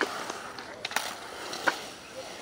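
Skateboard wheels rolling on a concrete skatepark surface, with a sharp clack at the start and a couple of lighter clicks about a second in and near the end.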